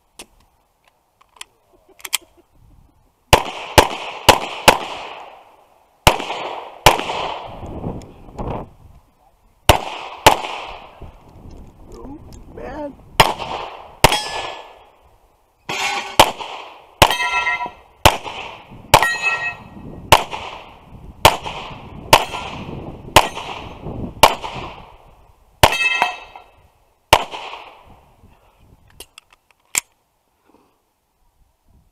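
Handgun fired at steel plate targets: a couple of faint clicks, then about twenty shots from about three seconds in, spaced roughly a second apart through the middle, with the steel plates ringing after many of the hits.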